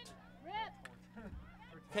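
Faint, high-pitched shouts of players calling out on the field hockey pitch over a steady low hum, with one sharp click a little before a second in.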